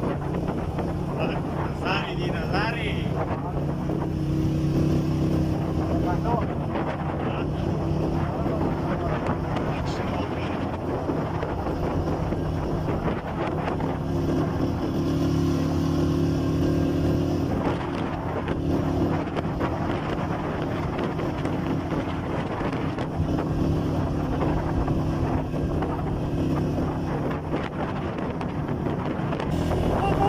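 Motorcycle engine running steadily while riding, its pitch rising and easing a little with speed, with wind buffeting the microphone.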